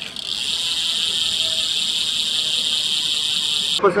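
Rear hub of an Aceoffix trifold folding bike with external three-speed gearing, its freewheel ratchet buzzing as the wheel spins freely. The buzz is a fast, even ticking that holds steady and cuts off suddenly near the end.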